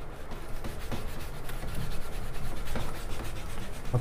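A whiteboard duster rubbing over a whiteboard, wiping off marker writing in quick repeated strokes.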